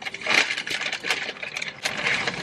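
Paper takeout packaging rustling and crinkling, a rapid run of small crackles as the food is handled and unwrapped.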